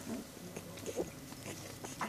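Newborn puppies nursing at their mother and making a few short grunts, the loudest about a second in.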